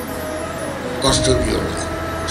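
A man's voice over a microphone and PA, pausing and then resuming briefly about a second in, over a steady low hum.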